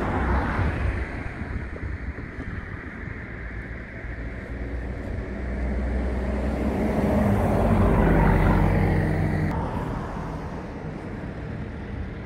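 A car passing by on the road, its engine and tyre noise growing louder to a peak about eight seconds in and then fading, over a steady low outdoor traffic rumble.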